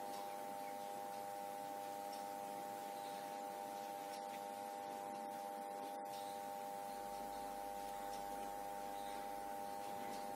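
Faint, steady background hum made of several high, unchanging tones, with no distinct handling sounds.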